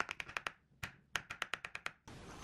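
A plastic spoon tapping quickly against the rim of a ceramic bowl, knocking off thick yogurt that is as stiff as cream cheese: two runs of light, sharp clicks, about eight a second, with a short pause between.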